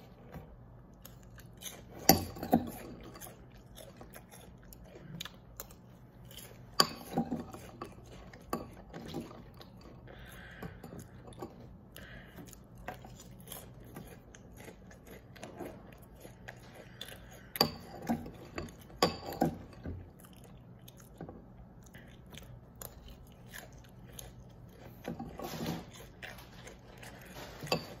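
Quiet chewing of Cascadian Farm Organic Cinnamon Crunch cereal in milk, mouthfuls crunching, with a few sharper clicks scattered through, the strongest about two seconds in, about seven seconds in and twice near the middle.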